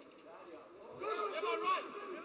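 Men's voices calling out, faint at first and louder from about a second in.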